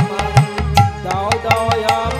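Instrumental devotional kirtan music: hand drums playing a quick, steady rhythm with sharp cymbal strikes, under a wavering melodic line.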